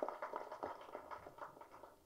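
A pause in speech: faint room sound of the hall with a few soft scattered ticks, fading to near silence near the end.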